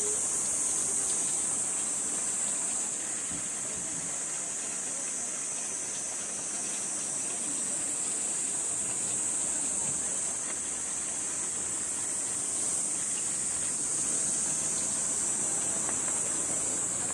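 Steady, high-pitched buzzing of a cicada chorus, rising and falling slightly in strength, over a low background hum.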